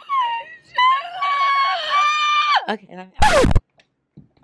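A woman making long, very high-pitched, sliding squeals and whimpers in play, then saying "okay" and giving a short, loud laugh near the end that blasts into the microphone.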